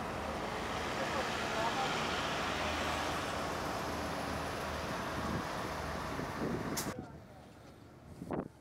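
Street traffic noise, with vehicle engines running as an ambulance drives past. It stops abruptly about seven seconds in.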